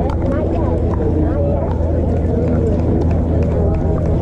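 Indistinct chatter of many players' voices across pickleball courts, with scattered sharp pops of paddles striking plastic pickleballs, over a steady low rumble.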